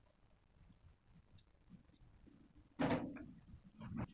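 Faint scraping of a knife cutting pieces off a block of palm sugar over a stone mortar, with a few small ticks, then a sudden short knock near the end and a smaller one just after.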